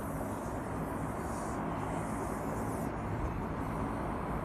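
Steady outdoor background noise with a heavy low rumble, as picked up by a camera microphone in the open, with no speech or music.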